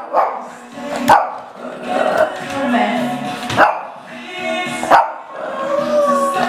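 Small shih tzu barking, a few short sharp barks spaced about a second or more apart, over radio music.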